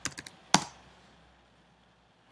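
Typing on a computer keyboard: a few quick keystrokes, then one louder key press about half a second in.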